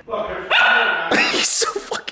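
Small white dog barking loudly, starting about half a second in.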